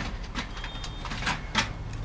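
Heavy-duty aluminum foil crinkling and rustling as it is handled, in an irregular run of short crackles.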